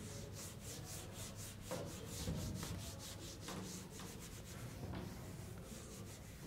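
Felt-tip marker writing on a whiteboard: short rubbing strokes, a quick run of them in the first two seconds, then fewer and more spaced out.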